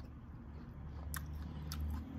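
A person chewing food close to the microphone, a low steady mouth noise that grows a little louder, with two short sharp clicks about a second in and near the end.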